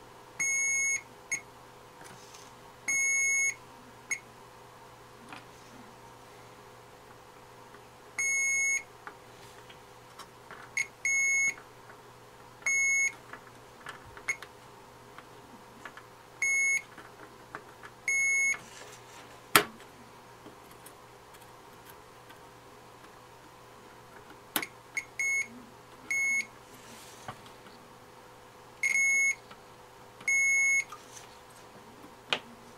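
A digital multimeter's continuity beeper sounding over a dozen times at irregular intervals, a steady high beep of about half a second or a brief chirp each time, as the probes touch capacitor pads. Each beep marks a pad with a direct low-resistance path to ground, in a hunt for the shorted tantalum capacitor. One sharp click, louder than the beeps, comes a little before the middle.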